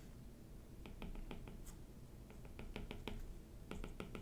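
Stylus tip tapping and scraping on a drawing tablet as a dashed line is drawn in short strokes: a run of faint, irregular clicks.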